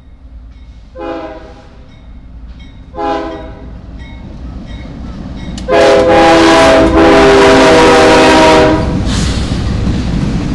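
CSX freight train's diesel locomotive horn sounding two short blasts and then a long blast of about three seconds, very loud, as the locomotives pass close by. Under it the low rumble of the diesel engines and the rolling train grows steadily louder.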